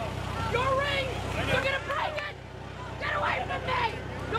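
Several people talking and calling out over a backhoe's diesel engine idling steadily underneath.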